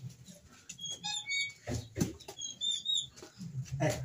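Small birds chirping: a few short high chirps about a second in and again near three seconds in, with a couple of sharp clicks around two seconds.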